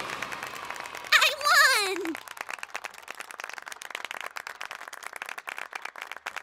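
A cartoon dolphin's squeaky, warbling call about a second in, followed by a crowd applauding with steady clapping.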